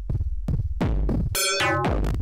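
Eurorack modular synthesizer playing a sequenced electronic groove. A deep, throbbing bass pulse repeats about twice a second, and from a little past halfway short pitched tones come in, sweeping downward in pitch.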